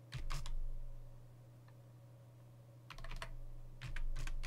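Computer keyboard typing: a few quick keystrokes near the start, then another short run of keys about three seconds in.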